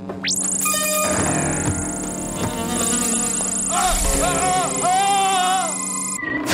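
Sci-fi laser-beam sound effect: a high, buzzing whine that sweeps up just after the start and holds steady until it cuts off at the end. It plays over electronic incidental music, which turns to warbling, wavering synthesizer tones in the second half.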